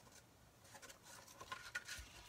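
Faint rustling and light ticks of string being wrapped around a folded card, the small sounds coming mostly in the second half.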